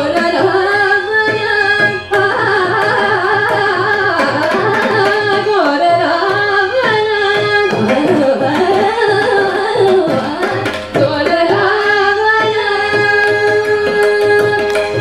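Carnatic vocal music: women's voices singing a melody full of gliding ornaments, accompanied by violin and the strokes of a mridangam.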